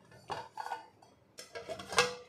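Stainless-steel plate used as a lid clattering against a steel pot as it is handled and lifted off, with a sharper clink near the end.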